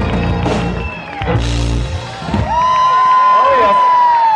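Live rock band with electric guitar, bass and drums finishing a song on a couple of final crashes, then the crowd cheering, with one long high whoop held over it from about two and a half seconds in.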